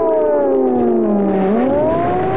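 Air-raid siren wailing. Its pitch falls steadily, then turns and rises again about one and a half seconds in.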